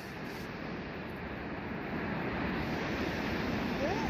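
Steady rush of wind on the microphone mixed with ocean surf, growing a little louder about halfway through.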